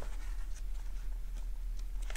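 Soft rustling and light ticking of paper pages in a spiral-bound booklet being handled.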